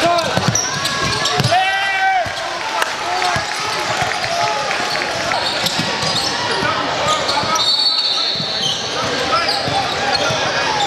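Live sound of an indoor basketball game: the ball bouncing on the hardwood court, with crowd and player voices throughout. A loud shout comes about a second and a half in, and a brief high tone near the end.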